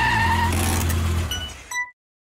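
Car engine sound effect: a low, steady engine rumble that fades about a second and a half in, followed by a short high metallic clink, then it cuts off suddenly.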